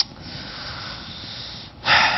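A man breathing audibly into a close microphone in a pause between words. A short mouth click comes first, then a long, soft breath, then a louder, sharper breath near the end.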